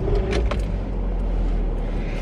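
A car engine running, heard from inside the cabin as a steady low rumble.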